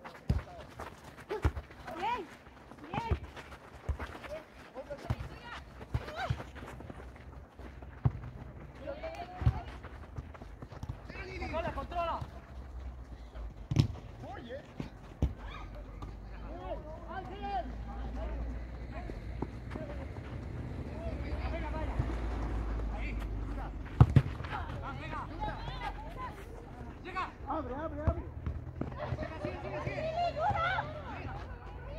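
Distant shouts and calls of players during an outdoor football game, with scattered sharp knocks; the loudest is a quick pair about 24 seconds in. A low rumble swells between about 15 and 26 seconds.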